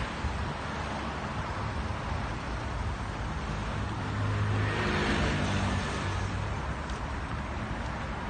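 Road traffic going by, with one vehicle passing close about halfway through, its engine growing louder and then fading.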